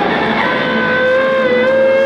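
Two electric guitars played loud through amplifiers in a noise improvisation. A held, slightly wavering tone comes in about half a second in over a dense wash of distorted guitar noise.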